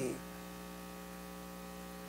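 Steady electrical mains hum, a faint stack of even, unchanging tones. The end of a man's spoken word fades out at the very start.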